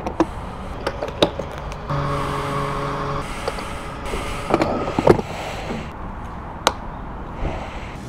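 Petrol pump nozzle clicking as it is lifted and handled, with the fuel dispenser's pump humming steadily for about a second, a couple of seconds in, while fuel runs into the motorcycle's tank. More sharp clicks of the nozzle follow.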